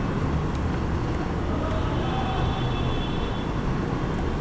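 Steady low rumble and hiss of background noise, with no speech and no distinct events.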